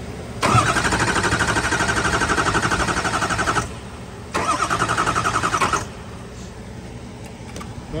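Starter motor cranking a Ford 6.0 Power Stroke V8 turbodiesel in two pulsing bursts, about three seconds and then a second and a half, energised by touching the starter cable straight to the battery terminal. The engine does not catch either time: the faulty IPR (injection pressure regulator) valve behind the turbo keeps it from starting.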